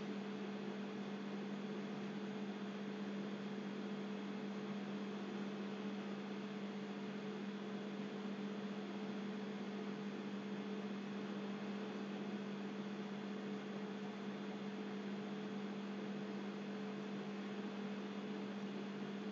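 Steady electrical hum with a fainter higher overtone over a faint hiss, unchanging.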